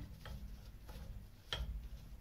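Faint handling sounds of biscuit sticks being set into a glass mason jar: a few light clicks, the sharpest about one and a half seconds in.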